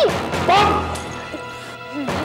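Two loud, pitched cries during a scuffle, the first with a sudden hit right at the start and the second about half a second in, over background music with held tones.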